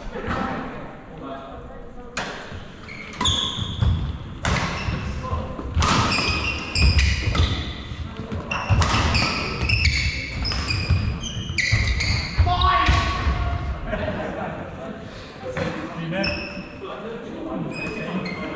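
A doubles badminton rally in a large hall: repeated sharp hits of rackets on the shuttlecock, with players' feet thudding and shoes squeaking on the wooden court floor.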